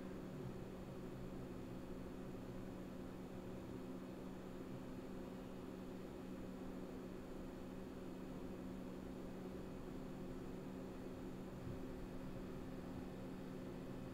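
Faint steady room tone: a low hum with a few fixed pitches under a light hiss, unchanging throughout.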